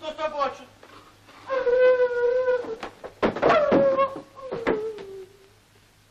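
A high voice calling out long, drawn-out wordless notes: one held at a steady pitch, then another that slides down and fades, with a sharp knock about three seconds in.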